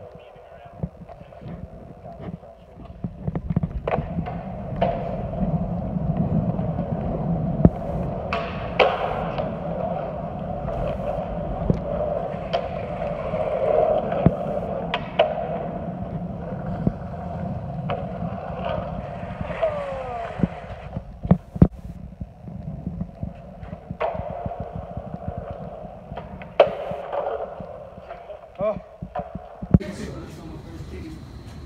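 Skateboard wheels rolling on smooth concrete, broken by sharp clacks of the board's tail popping and the board landing, with a short lull in the rolling about two-thirds of the way through.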